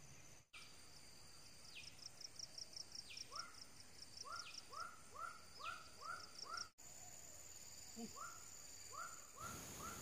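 Faint outdoor wildlife sounds: birds calling and insects buzzing. From about three seconds in, a short call repeats two or three times a second, with an occasional higher call sweeping down and a pulsing high buzz behind.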